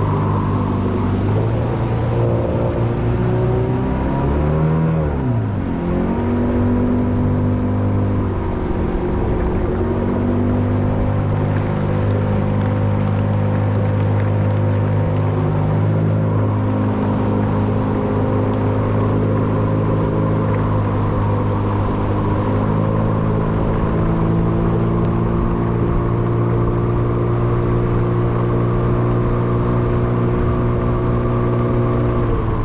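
Motor of a shallow-running tunnel hull boat running underway at a steady pitch, the engine speed dropping and picking back up once about five seconds in, with small changes in pitch later on.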